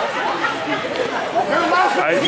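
Several people talking at once: overlapping crowd chatter from the spectators.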